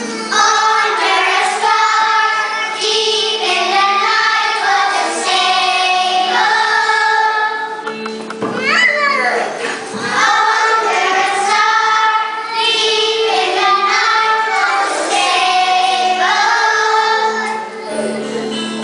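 A group of young children singing a song together over instrumental accompaniment, in long held notes, with a brief swooping slide in pitch about halfway through.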